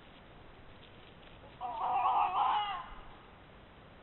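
A single loud animal call lasting just over a second, starting about one and a half seconds in, heard through a trail camera's microphone.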